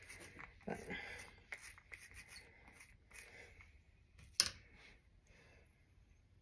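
Faint dabbing and rubbing as ink is sponged onto the cut face of a bell pepper half and the pepper is pressed onto fabric, with one sharp tap about four and a half seconds in.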